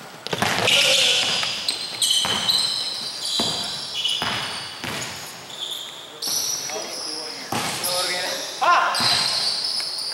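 Basketball game sounds in an echoing gym: a basketball bouncing on the hardwood court in sharp repeated thuds, short high squeaks of sneakers on the floor, and players' shouts, with a voice heard near the end.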